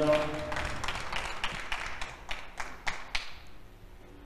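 Scattered hand clapping from the arena audience after a scored point, a run of separate claps that thins out and stops a little over three seconds in.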